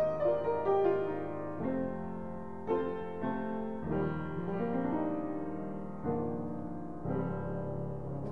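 Steinway upright piano being played: a slow run of chords and melody notes in the middle register, each ringing on. The piano is untuned and unregulated, heard as it stands before reconditioning.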